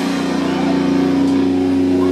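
Electric guitar ringing out through an overdriven amplifier in a steady low drone, the drums stopped.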